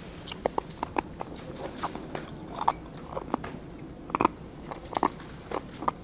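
Thin Bible pages being turned and leafed through, with irregular light crackles and clicks of paper.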